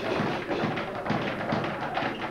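Speed bag being punched, its leather bag thudding against the rebound platform in a fast, steady rhythm.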